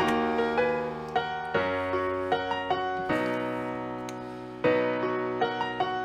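Addictive Keys virtual piano playing a slow melodic chord progression: sustained chords under a sparse high melody, with a new chord struck about every one and a half seconds, the one near the end the loudest.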